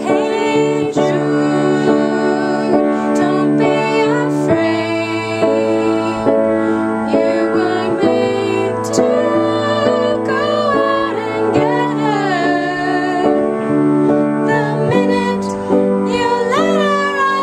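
Two female voices singing a slow song together, accompanied by a keyboard playing held chords that change every few seconds.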